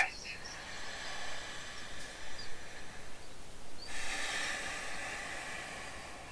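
A man taking a deep breath: a faint, slow inhale, then a louder exhale of rushing air starting about four seconds in and lasting about two seconds.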